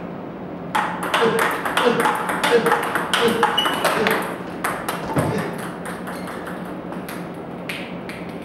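Table tennis ball struck back and forth: a quick run of sharp clicks off the rubber paddles and the table for about four and a half seconds, then one more click near the end.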